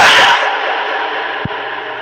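A whoosh transition sound effect at the start, followed by a long echoing tail that fades away steadily.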